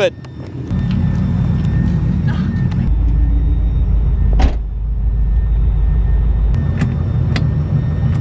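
LS1 V8 in a BMW E36 idling steadily with a low rumble that grows deeper for a few seconds in the middle. A single sharp knock sounds about halfway through.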